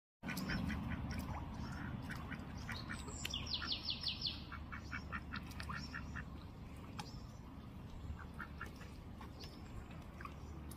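Mallard duck giving short, soft calls over and over, with a quick trill of about seven notes from a small bird about three and a half seconds in, over a low steady rumble.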